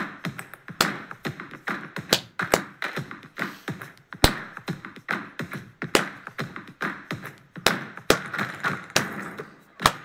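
Sharp percussive claps and taps sounding in a repeating pattern of beats in a clap-along rhythm exercise, some hits much louder than the rest.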